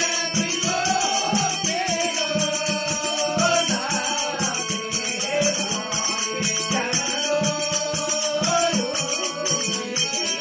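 Rajasthani devotional bhajan: a man sings to harmonium accompaniment over the drone of a long-necked tandoora lute, with a steady percussive beat of about three strokes a second.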